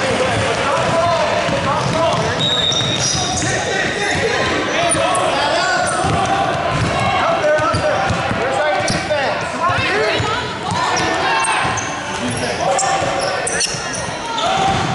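Basketball being dribbled on a hardwood gym floor during a game, with many voices of players, coaches and spectators calling out, reverberating in the large gym.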